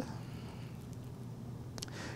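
Low room noise with one faint click near the end, from the handling of a plastic butterfly needle set.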